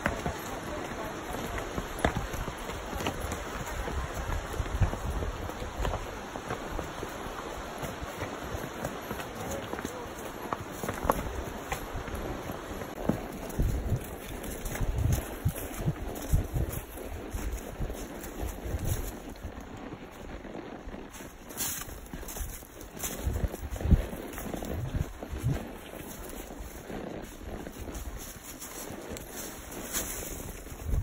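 Mules and horses walking a wooded trail, hooves stepping through dry leaves in irregular thuds. A rushing creek is heard in the first half and fades out, and wind buffets the microphone.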